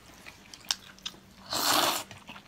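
Close-miked eating sounds: a few faint mouth clicks, then about a second and a half in a loud, noisy mouthful lasting about half a second.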